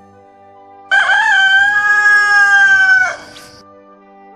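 A rooster crows once, loudly, for about two seconds starting about a second in, over quiet background music.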